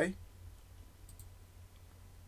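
Faint computer mouse clicks, a couple of short ticks about a second in, over quiet room tone.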